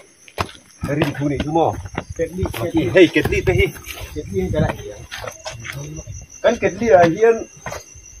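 People talking casually, over a steady high-pitched insect drone in the background.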